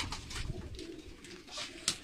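Domestic tumbler pigeons cooing faintly in their loft, with a light knock near the end.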